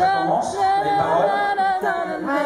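A woman singing solo and unaccompanied into a handheld microphone, holding long notes.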